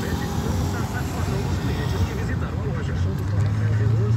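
Engine and road noise heard from inside a moving car, a steady low rumble with an engine hum that grows stronger near the end, with faint voices in the background.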